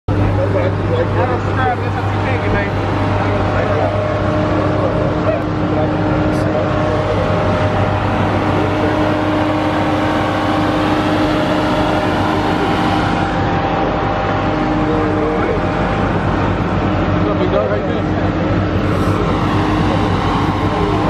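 Jeep Grand Cherokee Trackhawk's supercharged 6.2-litre V8 idling with a steady low drone, with faint voices over it.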